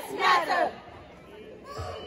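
A person's loud shout, ending about two thirds of a second in, followed by the low murmur of a crowd.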